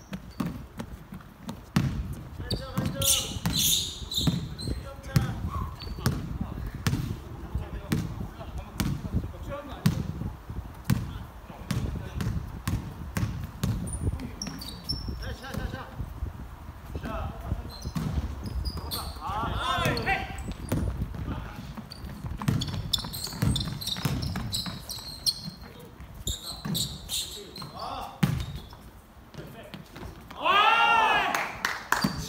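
Basketball bouncing and being dribbled on a hardwood gym floor, with many sharp knocks, running footsteps, shoe squeaks and players' voices calling out, echoing in a large gymnasium.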